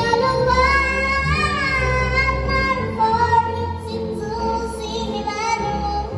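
A young girl singing solo into a microphone, holding long notes with a slight waver, over an instrumental accompaniment of sustained low notes.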